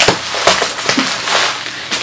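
Plastic bubble wrap being pulled open and unwrapped by hand: irregular crinkling and crackling throughout.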